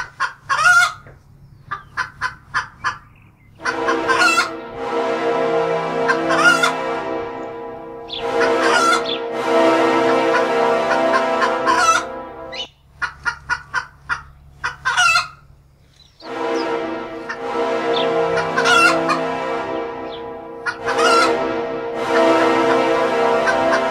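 Hens clucking in quick runs of short clucks, with louder squawking calls every few seconds. A steady many-toned layer underneath starts and stops abruptly, and the whole pattern repeats like a looped sound effect.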